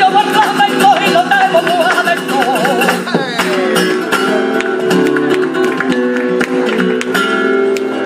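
Flamenco bulerías: a woman's wavering, melismatic singing over a flamenco guitar. The voice ends about three seconds in, and the guitar carries on with sharp handclaps (palmas) marking the rhythm.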